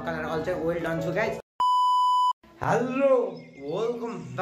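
A man talking, cut about one and a half seconds in by a single steady high censor bleep lasting under a second, with a moment of dead silence on each side of it.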